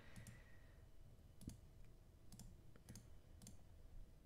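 Near silence with about half a dozen faint, sharp clicks scattered irregularly, from working at a computer drawing setup.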